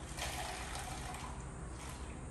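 Coffee pouring in a steady stream from the faucet of a BUNN brewer's dispenser into a foam cup.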